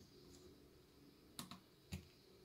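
Mostly quiet, then three light clicks about a second and a half in: a pyraminx puzzle being set down on a mat and hands coming down on a speedcubing timer's pads to stop it at the end of a solve.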